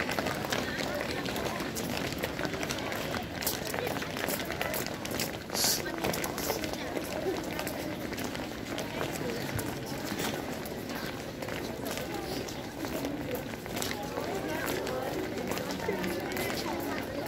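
Many schoolchildren walking and running across a paved courtyard: a steady patter of footsteps mixed with overlapping, indistinct children's chatter.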